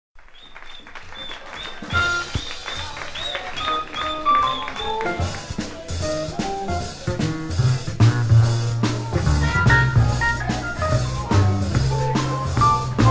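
Jazz combo playing the instrumental opening of the tune before the vocal enters. Deep low notes come in about halfway, and the music grows louder.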